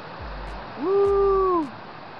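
Mountain stream rushing steadily over rocky cascades. About a second in, a voice gives one held "ooh", just under a second long, rising at the start and dropping away at the end.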